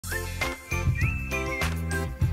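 Synthesized theme jingle for a TV morning show: a steady bass under short gliding lead notes, in a phrase that loops about every two seconds.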